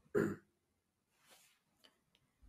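A person briefly clears their throat once, followed by a faint breath.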